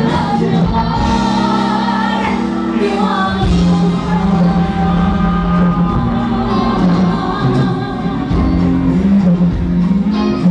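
Live Tejano band playing, with a woman singing lead into a microphone over the band.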